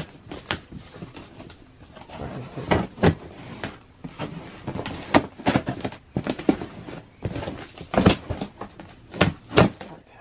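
Cardboard shipping box being slit open with a knife along its packing tape and handled: a string of irregular short scrapes, crinkles and knocks of cardboard and tape.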